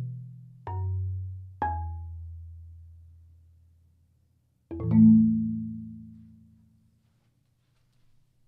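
Marimba played with soft mallets: two low bass notes about a second apart, each ringing down. After a short pause, a low chord is struck about five seconds in and left to ring out and fade.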